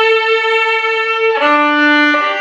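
Violin bowed in a slow melody: one long held note with slight vibrato, then about one and a half seconds in a step down to a lower note.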